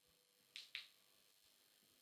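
Near silence: room tone, with two faint short clicks a little past half a second in.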